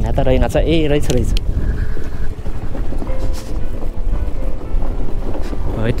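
Motor scooter engine running as the scooter is ridden slowly over a gravel road, with wind rumbling on the microphone. A voice is heard briefly at the start.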